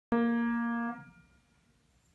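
A single mid-range note on an upright piano, one key pressed once, held for almost a second and then released so that it dies away quickly.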